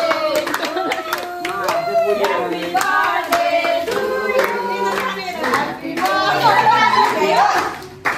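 A group of people singing together while clapping their hands along with it.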